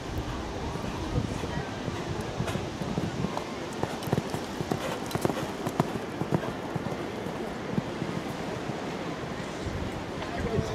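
Hoofbeats of a Haflinger stallion cantering over a sand arena, a run of irregular dull thuds.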